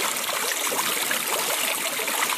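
Water falling steadily from the upper bowl of a tiered stone fountain and splashing into the basin below, with a wrist held in the falling water.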